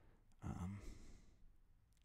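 A man sighs once, a breathy exhale with a little voice in it, lasting about a second.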